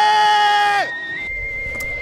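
A voice singing a long held note that cuts off just under a second in, over a steady high whistling tone. After it comes a low rumble with a hiss.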